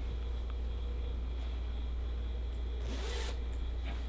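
Zipper of a zip-up hoodie drawn once, a short rasp about three seconds in, over a steady low hum.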